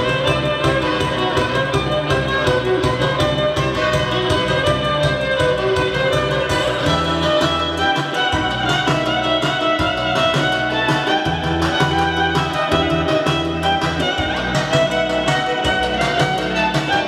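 Electric violin played live, a bowed melody over accompaniment with a stepping bass line and a steady beat.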